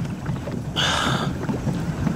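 Steady low rumble of an escort motorboat running slowly beside a swimmer, with a short hiss about a second in.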